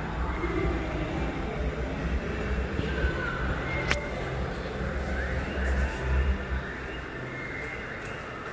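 Indoor arcade ambience: steady background noise with faint music and low rumbling from a hand-held phone being carried while walking, and a single sharp tick about four seconds in.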